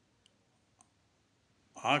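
A pause with two faint, short clicks, about half a second apart, before a man's voice speaking resumes near the end.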